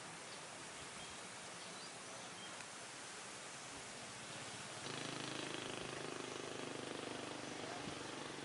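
Faint outdoor background noise, with a low steady hum joining about five seconds in.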